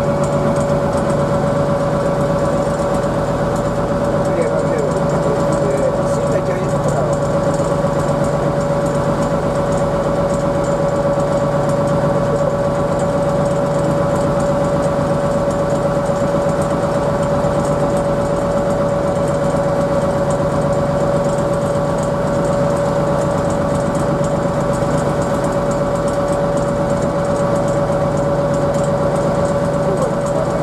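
Fishing boat's engine running steadily underway, heard inside the wheelhouse: a constant low drone with a steady high whine over it, never changing in speed.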